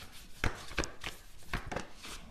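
A handful of light, sharp taps or clicks, irregularly spaced, about four or five in two seconds.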